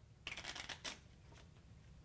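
Faint, quick flicking of playing cards as a card is drawn from a shuffled deck: a short run of soft flicks starting about a quarter second in and lasting about half a second, then one more light tick.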